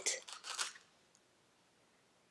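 A few soft crackles of a plastic clamshell wax bar pack being handled in the first second, then dead silence for the rest.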